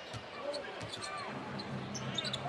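Basketball being dribbled on a hardwood court, a few bounces over a low, steady background of arena noise.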